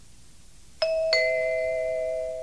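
Two-note electronic chime, a higher note and then a lower one about a third of a second later, the pair held together as a ding-dong. It is the cue that marks the start of the next question in a recorded listening test.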